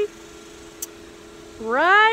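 A woman's drawn-out exclamation, rising in pitch, begins near the end after a quieter stretch. Under it runs a faint steady hum, with one short click about halfway.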